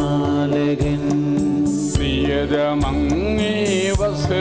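Liturgical hymn singing: a voice sings a slow melody with held, wavering notes over instrumental accompaniment with a steady beat.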